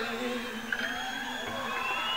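Live electric slide guitar holding sustained notes, with gliding high tones sliding up and down over them, in a quieter passage of a low-fidelity rock concert recording.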